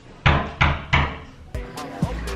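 Three loud, quick thumps of pounding on a room door, then a further bang and clicks as the door is pushed open.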